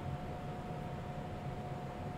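Steady room tone: a low hum and hiss with a thin, faint steady tone running through it.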